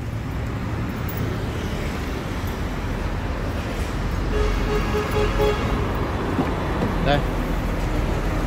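Steady low rumble of road traffic. About halfway through, a quick series of about five short pitched beeps is heard.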